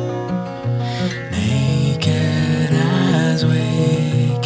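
Plucked acoustic guitar playing an instrumental passage of a quiet folk song between sung lines, the recording retuned to 432 Hz.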